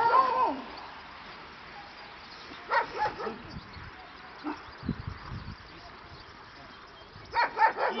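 A dog barking a few times in short bursts, mostly about three seconds in.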